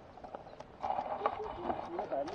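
Bicycle tyres on a gravel track, giving scattered small clicks and crunches. A faint voice comes in a little under a second in.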